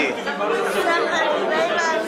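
Overlapping chatter of many people talking at once in a crowded room.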